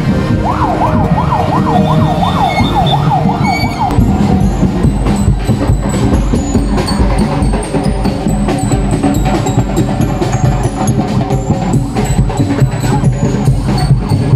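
A vehicle siren yelping in fast rising-and-falling sweeps for the first few seconds, then a street percussion band playing drums and cymbals in a steady, busy rhythm.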